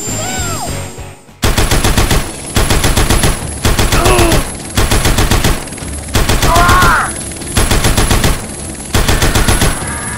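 Machine-gun fire sound effect, about seven rapid bursts of roughly a second each with short gaps between. A couple of brief squealing cries are mixed in, and a repeating warbling tone fills the first second before the firing begins.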